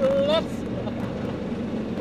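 A brief high voice at the very start, then a steady low engine rumble on a ferry deck among motorcycles.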